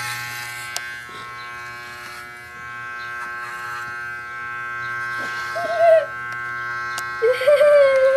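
Electric hair clippers buzzing steadily as they cut a boy's hair. A short wavering voice sound breaks in twice in the second half.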